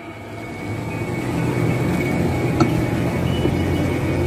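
A vehicle engine idling with a steady low rumble that swells up over about the first second and then holds, with a faint steady high tone above it.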